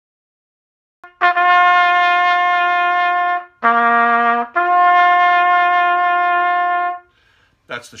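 Valveless B.A.C. prototype bugle with a large conical bell, blown as a short bugle call with a much darker tone. It plays a long held note, dips briefly to a lower note, then holds the first note again for about two and a half seconds before stopping.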